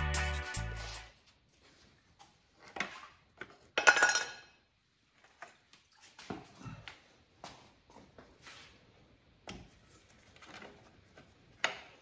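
Background music fading out in the first second. Then scattered metal clinks and knocks, the loudest about four seconds in, as the intake manifold and its fittings are worked loose and lifted off a Mercedes M117 V8.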